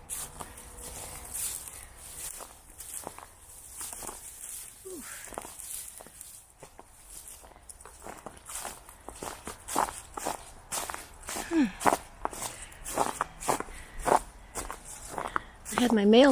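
Footsteps crunching through dry leaf litter and twigs, as a hiker pushes through brush beside a concrete wall. The steps get louder and closer together in the second half.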